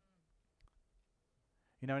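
Near silence in a pause between a man's sentences, broken by one soft click about two-thirds of a second in; the man starts speaking again near the end.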